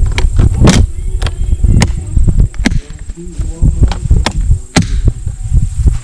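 Hard plastic Pelican case knocking and clacking against a steel TV wall-mount bracket on a motorcycle as it is hooked on and handled. The knocks and clacks come roughly one a second over a low rumble.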